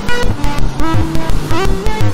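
Eurorack modular synthesizer groove: electronic music with a steady pulse of about four beats a second and short synth notes, some of them sliding up in pitch.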